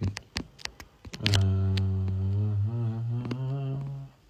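A man humming one low, drawn-out note with his mouth closed for nearly three seconds, the pitch stepping up a little past the middle. Before it, a few quick sharp clicks.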